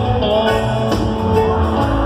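Live reggae band music: an electric guitar lead over bass and drums.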